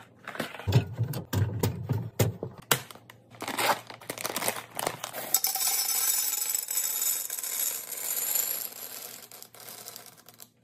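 Plastic yogurt cups set down into a clear plastic bin with several sharp clicks and knocks. A plastic bag crinkles, and from about five seconds in M&M's candies pour from the bag into a tall glass vase in a steady rattling stream that tapers off near the end.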